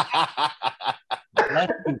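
Laughter: a chuckle of quick, short bursts in the first second or so, running into a few spoken words near the end.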